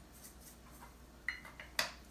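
Sea salt grinder being handled over a plate: a short light clink about a second in, then a single sharp click near the end.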